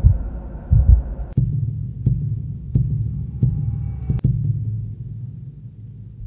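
A cinematic heartbeat sound effect playing back: low, deep heartbeat thumps repeating about every two-thirds of a second, with a faint high tone over them midway that fades as the beats grow softer.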